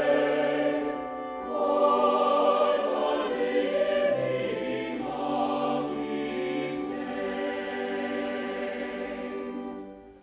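Mixed choir of men's and women's voices singing in long held phrases. The sound dips briefly about a second in and dies away at the end of a phrase near the end.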